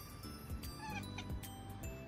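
A domestic tabby cat gives one short chirping call about a second in while watching birds through a window, over background music with a steady beat.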